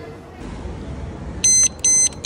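Motorcycle alarm disc lock on the front brake disc beeping as its key is turned: two loud high beeps about a second and a half in, followed by a short chirp.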